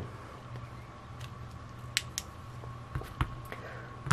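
A few faint clicks and light knocks as two small pocket flashlights are handled and set down on a mat: two sharp clicks about halfway through, then a couple of duller knocks shortly after.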